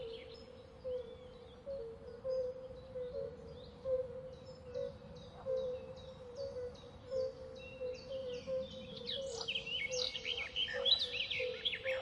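Outdoor wildlife ambience of birds chirping, their short high calls repeating quickly and growing busier in the second half, over a steady faint hum.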